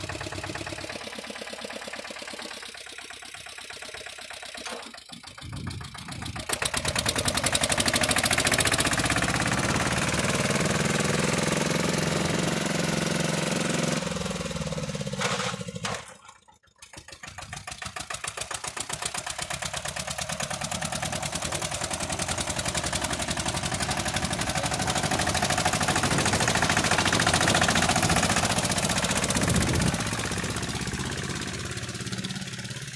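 Pasquali 991 four-wheel-drive tractor's diesel engine running and then revving as the tractor pulls away and drives off, the engine note rising under acceleration. The sound drops away briefly about halfway through, then the engine runs on steadily.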